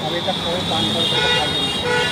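Street traffic with a vehicle horn tooting: a steady high-pitched tone, with a lower horn note joining about halfway through, over road noise and faint voices.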